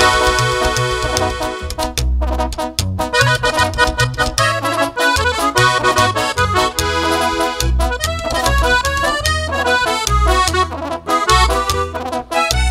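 Instrumental break of a live norteño corrido: button accordion playing a lead of quick running notes over a plucked upright bass and tuba bass line.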